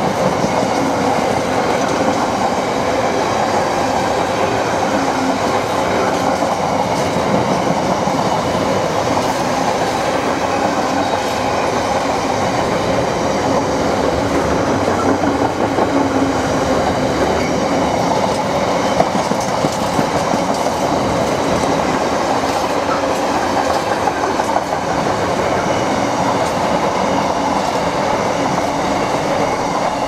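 Loaded container flat wagons of a heavy freight train rolling steadily past at close range: a continuous loud rumble and clatter of steel wheels on the rails.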